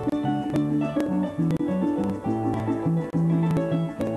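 Instrumental llanero joropo music: a harp plays a plucked melody over a moving bass line, with short rhythmic shakes of maracas.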